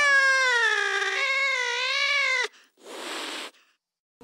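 The soundtrack music ends on one long, wavering high note that cuts off about two and a half seconds in. A short burst of hiss follows.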